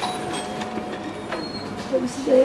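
Room noise of a public service hall with faint background murmur, a thin steady tone for about the first second and a quarter, and a short click about a second and a half in.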